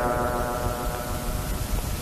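A short pause in Pali paritta chanting: the last chanted tone fades faintly under a steady hiss, and the chanting starts again right at the end.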